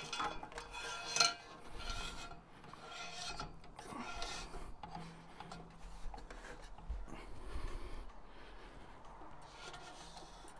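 Faint, irregular rubbing and scraping as the patio heater's metal burner assembly and its tag are handled and worked onto the post, with one sharper click about a second in.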